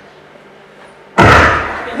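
A quiet pause, then about a second in a single loud, sudden thump that dies away over most of a second.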